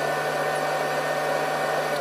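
Water in a mug heating toward the boil around a 200-watt electric immersion heater element: a steady hiss, with a steady hum underneath.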